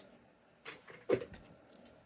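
A few soft, short taps and a brief rustle as a piece of white cardstock is handled and set down on a craft mat, in an otherwise quiet room.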